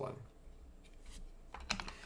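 A few light clicks of hard plastic near the end, as PCGS coin slabs are handled in their box and knock against each other.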